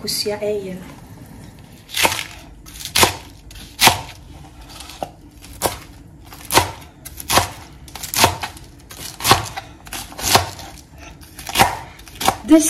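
A chef's knife chopping cabbage on a plastic cutting board: separate sharp knocks of the blade hitting the board, starting about two seconds in and coming roughly once a second.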